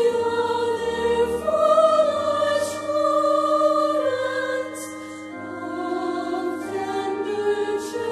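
Recorded choral music: a choir singing slow, sustained chords that change every second or two.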